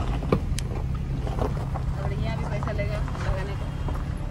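Car moving slowly over a rough gravel road, heard from the cabin: a steady low rumble, with a sharp knock about a third of a second in. Faint voices are heard in the background.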